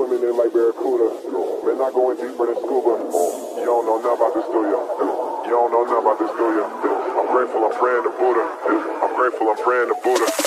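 A voice in an electronic music track, filtered thin like sound from a radio, with no bass beneath it. A short burst of hiss comes in about three seconds in.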